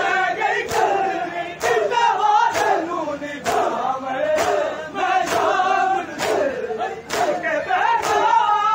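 A large crowd of men chanting a noha in unison, with sharp collective chest-beating (matam) slaps falling together in a steady rhythm of roughly one a second.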